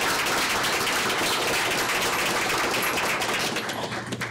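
Applause from a roomful of people clapping, thinning out and dying away near the end.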